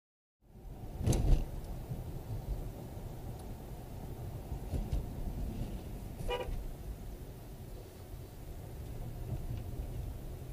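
Car interior road noise picked up by a cheap dash cam's microphone while driving: a steady low rumble of engine and tyres. A loud thump about a second in, and a short car-horn toot about six seconds in.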